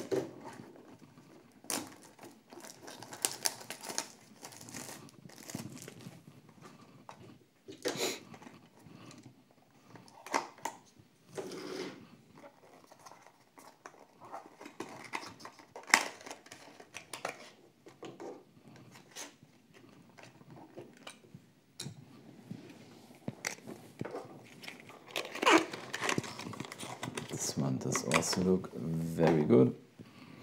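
Clear plastic shrink-wrap being torn and crinkled off a small cardboard model-car box, then the box flap opened and the card handled, in irregular crackles and rustles.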